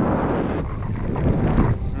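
Wind rushing over a GoPro's microphone on a skier moving downhill through fresh powder, with the hiss of skis sliding in the snow.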